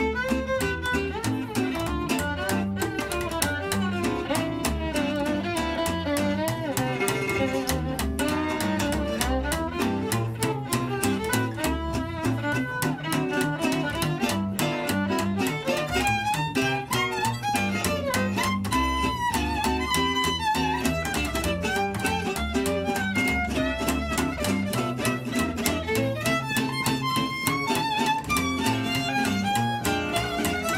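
Live acoustic jazz trio: a violin carries the melody over chords strummed on an oval-hole, Selmer-style acoustic guitar and plucked upright double bass. The guitar's strumming keeps a fast, even beat.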